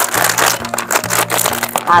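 A plastic snack bag crinkling and crackling as it is handled and opened, with many sharp little crackles, over steady background music.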